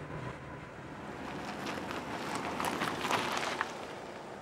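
Seat Toledo 1.8 20-valve driving on the road: a steady wash of engine and tyre noise that swells gently to about three seconds in, then eases off, with some wind noise mixed in.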